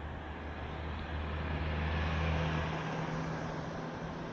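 A car driving past on the road alongside, its engine hum and tyre noise swelling to a peak about two seconds in and then fading away.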